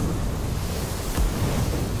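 Sound-effect rumble of surging fire energy from a blazing magical orb, deep and steady, with a faint crack about a second in.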